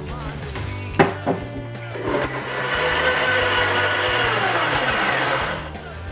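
Blendtec high-power blender running for about three and a half seconds, pureeing soaked cashews into a smooth cream. Its pitch drops in the last second or so before it cuts off. A sharp click comes about a second in, before the motor starts.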